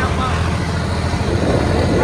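John Deere 5050D turbo tractor's three-cylinder diesel engine running steadily under load while pulling a 7-foot rotavator, its note holding without dropping.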